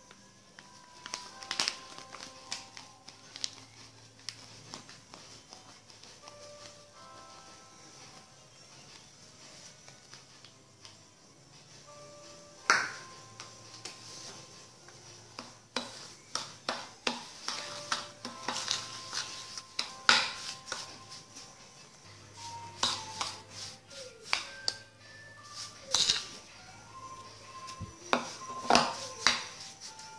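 Soft background music, with a metal spoon clinking and scraping against a ceramic bowl while ground coffee is stirred into a thick scrub mixture. The clinks are few at first and come quick and frequent through the second half.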